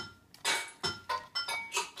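A hip-hop backing beat starting up: a pattern of sharp drum hits, about three a second, with faint synth tones.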